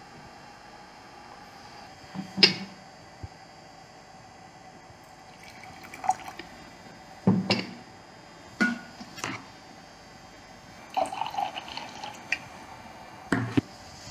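Cups and a glass teapot handled on a table: several separate clinks and knocks as they are picked up and set down, with tea poured into a small cup.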